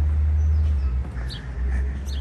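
Low, steady rumble of wind on the microphone, with a few faint bird chirps.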